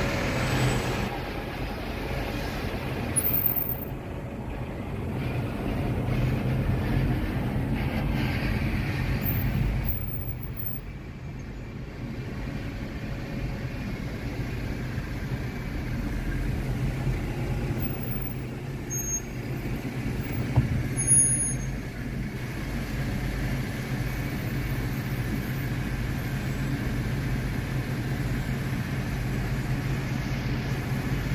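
Slow city traffic heard from inside a car's cabin: a steady low engine hum from the car and the double-decker bus just ahead, with a few brief louder moments.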